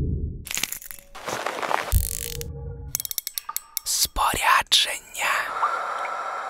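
Edited sound-effects sting over music: a low rumble dies away, then swishes and a thump, a quick run of sharp mechanical clicks like a reel's ratchet, gliding whistle-like sweeps, and a steady high tone near the end.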